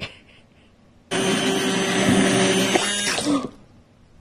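Electric immersion hand blender running in a pot of melted, chunky deer tallow, emulsifying it. It starts about a second in, runs at a steady pitch for about two seconds, then cuts off.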